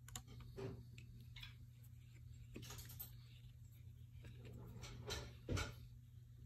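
Faint scattered clicks and taps of a small hex key and the wooden legs of a guitar stand being handled while a screw is tightened into a leg joint.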